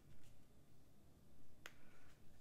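Near quiet, with one short, sharp click about one and a half seconds in.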